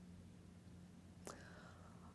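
Near silence: room tone with a faint steady low hum, and one brief faint click a little over a second in.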